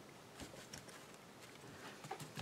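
Near silence: room tone with a few faint light clicks of metal tweezers against a cup, as a small wet paper book is lifted out of coffee.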